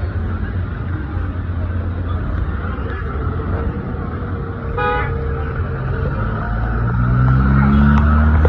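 Street traffic: a steady low rumble of car engines, a short car horn toot about five seconds in, then a vehicle engine revving up and growing louder near the end.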